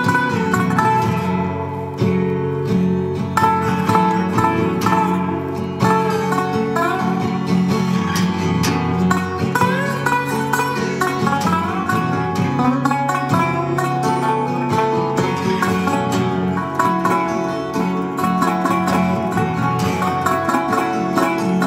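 Blues played on a plucked acoustic guitar, with a steady bass line and a few sliding notes, running without a break.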